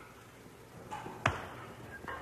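A single sharp knock or impact about a second in, briefly ringing, among faint scattered clicks.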